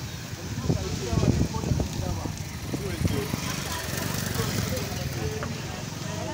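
Several people talking over street noise, their words not clear, with the motorcycle taxis' engines running.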